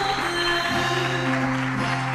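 Music with long held notes over a sustained low bass note.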